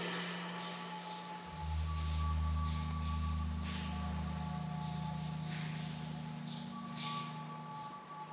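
Soft ambient background music: a sustained low drone whose chord shifts and deepens about one and a half seconds in, with quiet held higher tones fading in and out.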